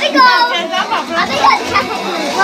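Several people talking at once, with children's voices among them: crowded party chatter.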